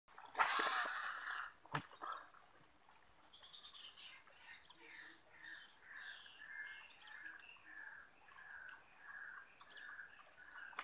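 Swamp ambience: a steady high-pitched insect drone, with a short, pitched animal call repeated about two to three times a second from about three seconds in. A brief burst of noise in the first second and a single sharp click just after stand out above it.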